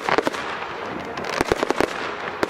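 Fireworks going off: aerial shells bursting in a scatter of sharp cracks and pops, a quick cluster at the start and another about a second and a half in.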